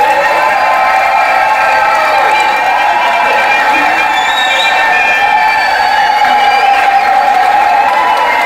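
A large wedding congregation cheering loudly, with many voices shouting and calling out at once over clapping, a steady celebratory din that does not let up.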